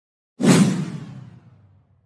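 An edited-in whoosh sound effect that starts suddenly about half a second in and fades out over about a second and a half, with a falling sweep as it dies away.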